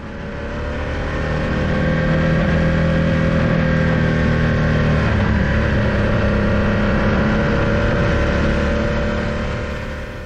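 Motorcycle engine running steadily at low road speed while climbing a mountain road, heard from a windscreen-mounted action camera with wind noise over it. The sound fades up over the first two seconds and back down near the end.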